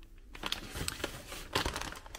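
Plastic food packaging crinkling irregularly as it is handled, with a few short crackles.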